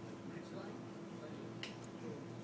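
Outdoor patio ambience: a low murmur of voices over a steady hum, with one sharp click about one and a half seconds in.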